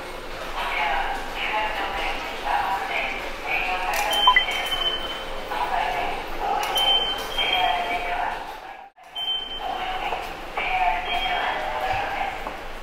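Automatic subway ticket gates beeping as passengers pass through: several short high electronic beeps, spread a few seconds apart, over station concourse noise.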